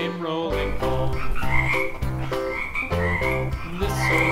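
Several short frog croaks, starting about a second and a half in, over background music.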